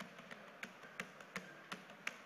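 Faint, light taps or clicks, about six of them at irregular spacing over two seconds.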